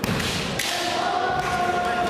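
Echoing kendo tournament hall noise: thuds, then a long held shout about half a second in, typical of a kendo player's kiai.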